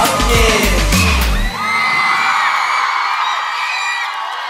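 A K-pop song's backing track with a heavy bass beat ends abruptly about one and a half seconds in. A studio audience of fans keeps screaming and cheering after it stops.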